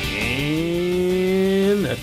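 A man's voice holding one long drawn-out call: it rises at the start, holds steady, then drops away near the end.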